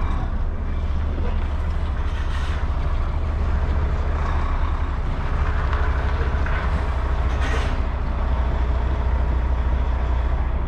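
Volvo truck's diesel engine running at low revs, heard from inside the cab as a steady low rumble while the lorry creeps forward. A short hiss comes about seven and a half seconds in.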